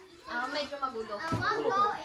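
Children's voices and chatter as kids play in a room: soft, unclear talk with no single clear speaker, rising in level after a brief hush at the start.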